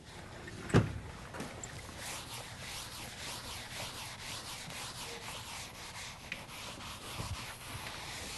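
Felt chalkboard eraser rubbing across a blackboard in quick repeated back-and-forth strokes, with a single knock about a second in.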